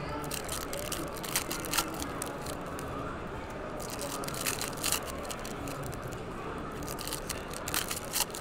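Foil trading-card pack wrappers crinkling and tearing as packs are opened by hand, in several short sharp crackles. A steady background murmur of voices runs underneath.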